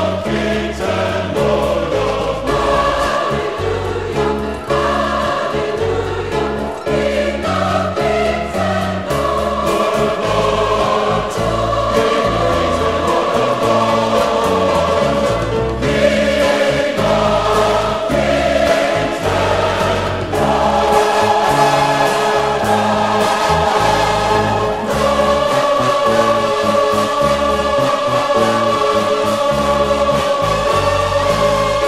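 A choir singing a gospel hymn in long held chords, with low bass notes changing beneath.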